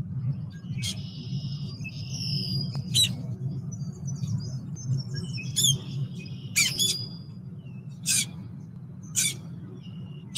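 Birds calling in a marsh: short sharp call notes every second or two, with bursts of high chirping, over a steady low rumble.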